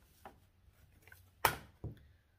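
A sharp plastic click about one and a half seconds in, followed by a softer one, as plastic sewing clips are handled on the sewing table.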